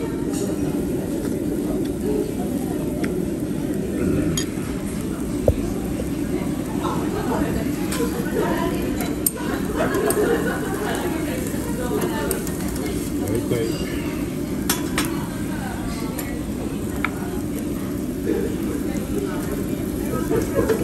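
Steady background chatter with scattered clinks of tableware and metal tongs on a charcoal grill's wire grate, while pork slices sizzle on the grill.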